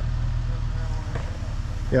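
Jeep Wrangler TJ engine idling with a low, steady rumble, waiting to back off a rock ledge.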